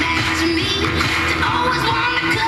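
A pop song with singing and guitar, an FM radio broadcast playing through a loudspeaker.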